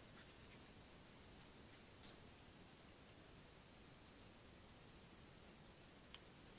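Near silence with a few faint snips and scratches of small scissors cutting the leathery shell of a ball python egg, the clearest about two seconds in.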